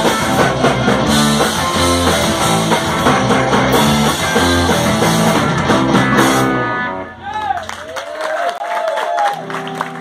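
Live rock band playing loud, with electric guitar, bass and drums on a steady beat, stopping abruptly about seven seconds in. Quieter wavering, sliding tones follow, and a low note is held near the end.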